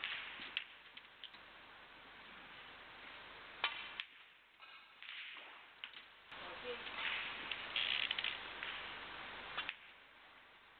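Snooker balls clicking on the table: one sharp, ringing click of ball striking ball a little over three and a half seconds in, with a few fainter clicks, over a quiet arena hiss.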